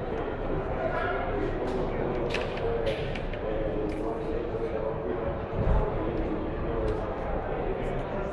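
Indistinct speech with no clear words, with a short low thump about two-thirds of the way through.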